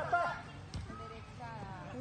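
Voices of several people calling out and talking at a distance, with a faint single knock about three-quarters of a second in.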